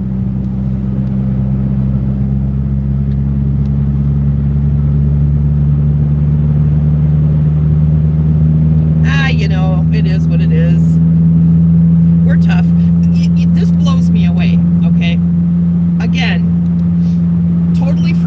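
Car engine and road noise heard from inside the cabin while driving: a steady low drone that grows gradually louder over the first twelve seconds or so.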